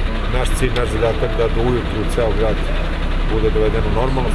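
A man speaking over a steady low rumble of running vehicle engines.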